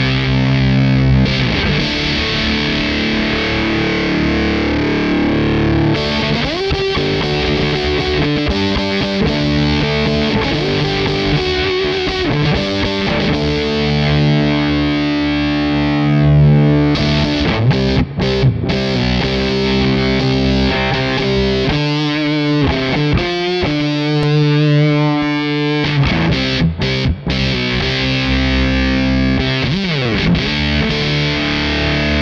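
Electric guitar played through the Crazy Tube Circuits Motherload's Muff-inspired fuzz circuit, with thick, sustained fuzzed chords and riffs. The tone changes as the pedal's filter knob is turned, and for a few seconds about three quarters of the way through the bass drops away for a thin, filtered sound.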